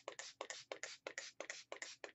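Mod Podge spray bottle being pumped fast, a run of about ten short spritzes at roughly five a second.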